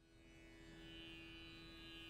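Near silence with a faint, steady drone: a held tone with overtones, with no plucks or melody.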